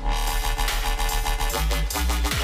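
Riddim dubstep track: heavy sub-bass under a dense, gritty synth bass, picking up again right at the start after a brief break.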